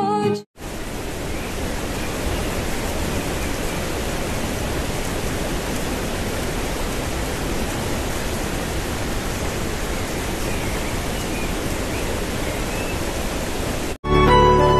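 Steady rushing noise of a waterfall pouring into a rock gorge, even throughout, starting about half a second in when background music cuts off.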